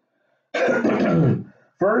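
A man clears his throat once, a voiced sound about a second long falling in pitch, starting about half a second in, followed by the start of speech.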